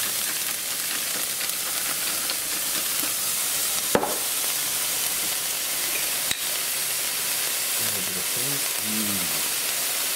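Yellowfoot chanterelles and diced onion sizzling steadily in a cast-iron skillet, with a sharp click about four seconds in and a smaller one just after six seconds.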